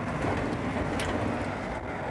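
Road and engine noise heard inside a moving vehicle's cab: a steady low rumble, with one short click about a second in.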